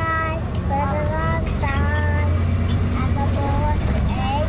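A toddler's high voice in several drawn-out, sung notes over the steady low rumble of a moving vehicle's cabin.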